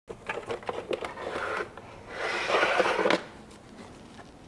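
Clicks and knocks of a tool working at the hex screws of a plastic engine cover, followed about two seconds in by a louder scraping, rushing noise that lasts about a second.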